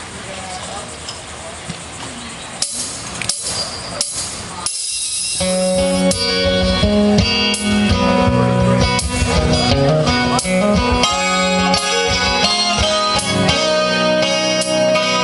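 Acoustic guitar playing a song's instrumental intro: a few scattered strums at first, then from about five seconds in a steady run of ringing chords, louder.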